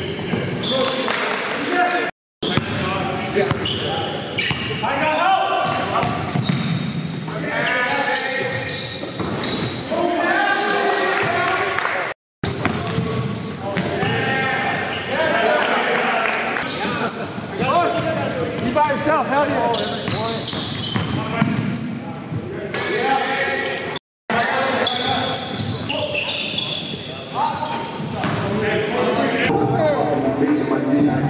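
Basketball game in a large gym: the ball bouncing on the court while players shout and call out. Three brief dropouts to silence break it up at the edit cuts.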